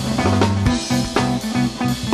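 Live jam-band rock played through the festival PA: a drum kit keeping a steady beat of about two hits a second under sustained bass notes and guitar.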